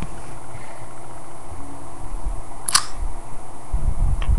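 Hand handling of an iPod Touch held right up to the microphone: a steady hiss with low bumps, one sharp click about three quarters of the way through, and heavier low thuds near the end.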